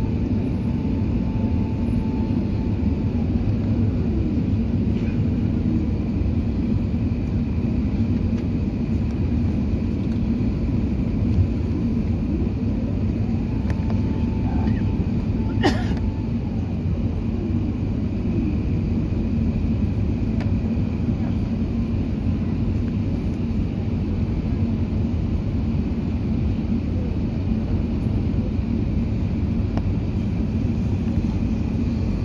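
Steady low rumble of engine and airflow noise inside the cabin of an Airbus A380 on its descent. A faint whining tone holds and then slides away near the start and again around the middle. One sharp click comes about 16 seconds in.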